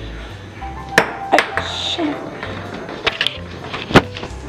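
A small plastic Christmas-cracker toy yo-yo being tried out: a handful of sharp clacks and knocks, two about a second in and a cluster near the end, the last the loudest.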